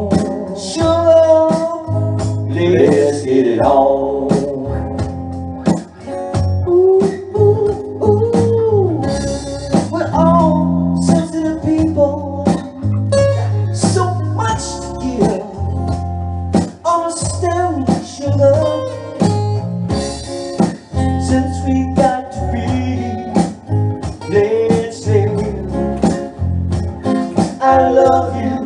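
A live band playing a bluesy song: guitar, bass and drums, with a melody line that bends and slides in pitch over a steady beat.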